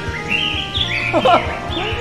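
Birds chirping in a series of quick, high chirps over light background music.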